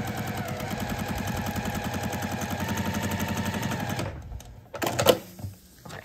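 Domestic electric sewing machine stitching steadily through a paper foundation and fabric, a fast even run of needle strokes that stops about four seconds in. A brief sharp noise follows near the end as the block is handled.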